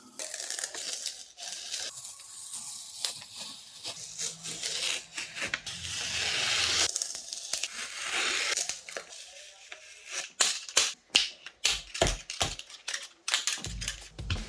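Masking tape being peeled off paper in long, rasping tearing pulls. In the last four seconds or so comes a quick run of sharp clicks and taps.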